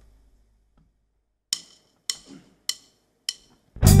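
A four-click count-in of sharp wooden clicks, typical of drumsticks struck together, evenly spaced about 0.6 s apart. The full band then comes in loud just before the end.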